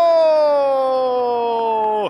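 A Brazilian football commentator's long drawn-out goal shout: one held, loud "gooool" sliding slowly down in pitch and cut off abruptly at the end.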